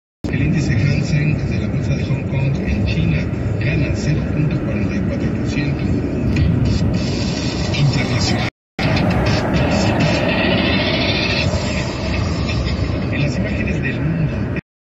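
Steady road and engine noise from a car driving at freeway speed, heard from inside the cabin, with an indistinct voice or radio underneath. The sound cuts out to silence for an instant at the start and again about two-thirds of the way through.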